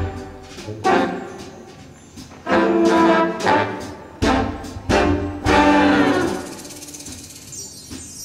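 Big band brass section playing short, punchy ensemble chords with gaps between them, then a longer held chord about five and a half seconds in that fades away.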